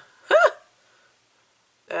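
A single short, high-pitched vocal sound from a woman about half a second in, rising and then falling in pitch, like a hiccup or brief yelp.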